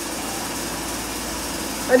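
Steady, even background drone with no distinct events; a word is spoken at the very end.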